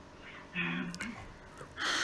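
A woman's brief voiced sound, a short hum or word, about half a second in, then an audible intake of breath near the end as she starts to speak.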